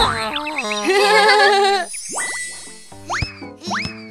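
Cartoon sound effects over children's background music: a wavering, wobbling tone for about two seconds, then a rising glide, then springy boings, about two a second, starting near the end.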